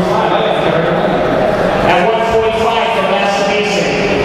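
A man speaking over a public-address system, echoing in a large hall; the words are not clear.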